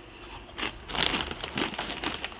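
Onion-ring crisps being bitten and chewed, a run of irregular crisp crunches.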